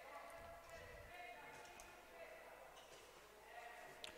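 Near silence: faint background ambience of an indoor sports hall.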